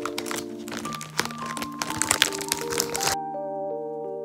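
Plastic bakery bag crinkling and crackling in quick, dense rustles over light background music with a soft mallet-like melody. The crinkling cuts off abruptly about three seconds in, leaving only the music.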